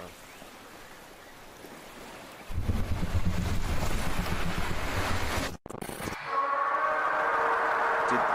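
A faint sea-like hiss, then a loud low rumble from about two and a half seconds in that cuts off abruptly. About six seconds in, a Godzilla roar begins: one long, steady, pitched call, haunting.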